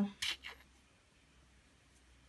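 Glass stopper being pulled out of a small glass bottle: a brief glassy scrape and clink about a quarter second in, then quiet.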